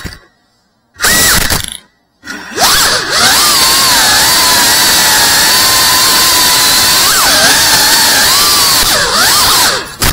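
Cinewhoop FPV drone's brushless motors and propellers whining: two short bursts with silent gaps in the first two seconds, then a long unbroken run from about two and a half seconds in, the pitch wavering, dipping and rising with throttle, cutting out right at the end.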